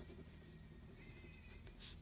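Faint scratching of a pen writing on paper in short strokes, with one stronger stroke near the end.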